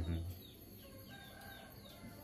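Faint chicken clucks and high, short falling peeps of fowl or small birds, with a brief low voice sound cut off just after the start.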